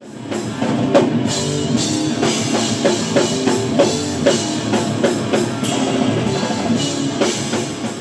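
Rock music starting abruptly: a drum kit playing a steady beat over sustained guitar.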